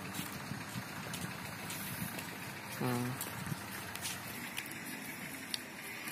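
Steady outdoor background noise, with one short burst of a person's voice about three seconds in and a few faint clicks.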